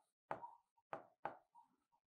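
Faint, irregular taps of a pen stylus on an interactive whiteboard's screen during handwriting, about four in two seconds.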